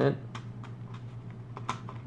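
Several light, irregular plastic clicks as a dashcam's suction-cup mount is rotated and tightened on its ball joint.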